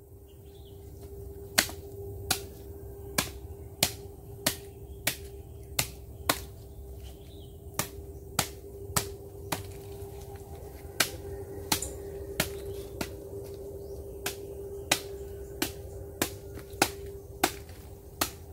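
A machete chopping into a nipa palm fruit head: a long run of short, sharp chops roughly every two-thirds of a second, with two brief pauses. A faint steady tone hums underneath.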